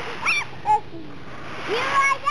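Small children making wordless vocal sounds: two brief high squeals, then a rising 'whoo' near the end, over the rustle of dry leaves being stirred.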